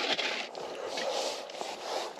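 Rustling and light scraping of hands, clothing and a plastic live-bait bucket as its lid comes off and a small fish is taken out, with a few faint clicks.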